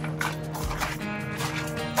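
Background music with steady held tones.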